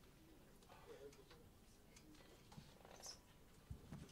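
Near silence: faint room tone with a few soft scattered clicks and a brief low thump near the end.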